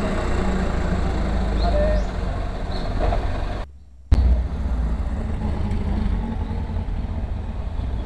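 A bus driving close past with a low engine rumble. The sound drops out suddenly just before halfway through, then a low vehicle rumble goes on.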